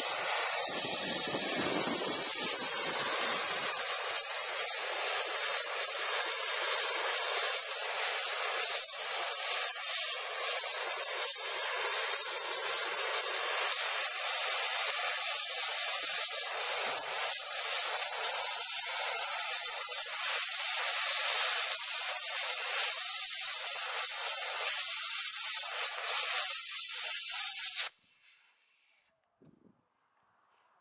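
Gas torch flame hissing steadily as it burns a broccoli stalk, then stopping abruptly near the end.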